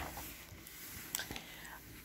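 Faint paper rustling as a hand handles and smooths the open pages of a picture book, with a few light taps.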